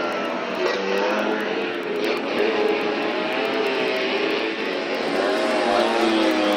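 Engines of modified racing Vespa scooters revving as they pass close by, several engines at once, their pitch rising and falling as each goes by.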